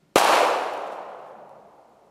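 A single .22 Long Rifle shot from a Ruger Mark II Target pistol: one sharp crack, followed by a long tail that fades over about two seconds.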